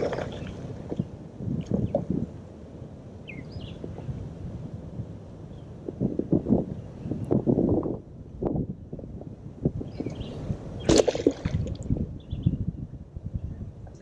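Shallow, muddy water sloshing and gurgling in irregular bursts as someone moves through it, with a sharper splash about eleven seconds in.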